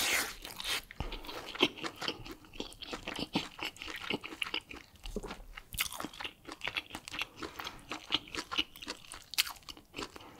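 Close-miked chewing of a mouthful of fufu and palm nut soup: a dense run of quick, wet mouth clicks and smacks.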